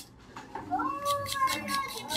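A single drawn-out pitched call that rises at first and then holds for about a second, starting a little under a second in.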